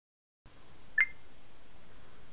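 One short electronic beep about a second in, its pitch stepping up slightly, over a steady faint room hiss.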